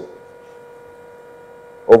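Steady electrical hum in the microphone and sound-system chain, with a faint whine of several fixed high tones, in a gap between spoken words. A man's speech starts again near the end.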